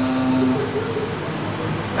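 A man's drawn-out, level 'eee' hesitation sound lasting about a second, then a steady background hum and hiss in a large hall.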